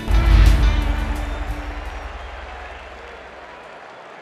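Soundtrack music ending: a country-rock song closes on one loud final hit right at the start, which rings out and fades away over about three seconds.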